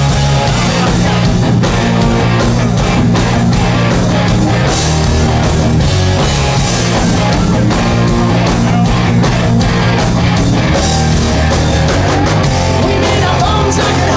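Hard rock band playing live and loud: distorted electric guitars, bass guitar and a drum kit driving a steady beat.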